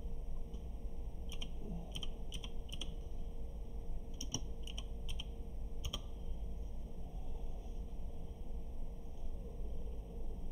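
Computer keyboard keystrokes: about nine scattered sharp clicks between one and six seconds in, over a steady low electrical hum.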